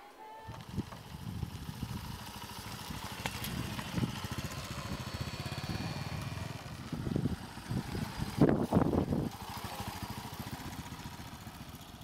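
Small motorcycle engine running as the bike rides along, a steady low rapid pulsing.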